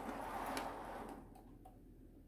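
Plastic parts of a painted 1/35 scale model Kodiak engineering tank being handled as its excavator arm is lifted and swung. A soft rubbing, scraping noise lasts about the first second, followed by a few faint clicks.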